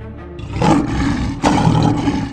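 A lion roaring, in two loud pushes, the first about half a second in and the second about a second later, over background music.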